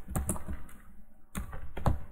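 A few scattered keystrokes on a computer keyboard: typing.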